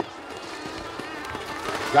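Hoofbeats of a galloping horse on a packed snow-and-dirt track among crowd noise, which grows louder toward the end and finishes in a sharp thump.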